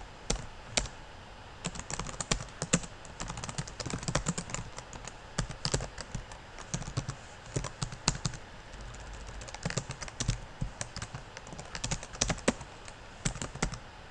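Typing on a computer keyboard: irregular bursts of keystrokes with short pauses between them.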